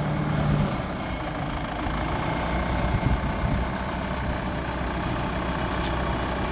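Tractor engine running steadily at idle, driving a rear-mounted post-hole auger rig; a higher hum drops out a little under a second in, leaving a low, even drone.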